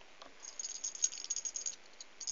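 A brief, faint, high-pitched rattle of rapid light clicks. It starts about half a second in and lasts a little over a second.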